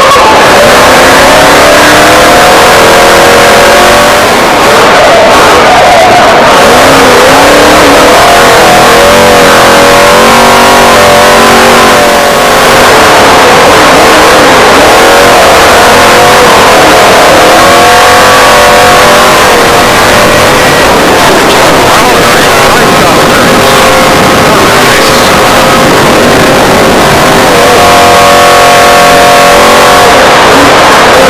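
Off-road Trophy Truck's race engine, heard from inside the cab, revving up and dropping back again and again as it accelerates and shifts. It is very loud and overdriven.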